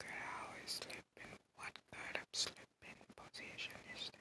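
A person whispering in short breathy phrases.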